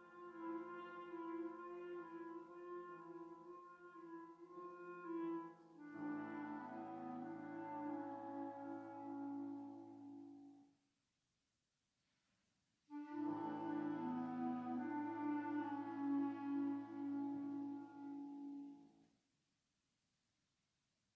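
Concert band of saxophones and brass playing slow, held chords in a chorale style. A fuller chord with low brass swells in, then the band stops for about two seconds of silence. A last loud chord is held and cut off together near the end.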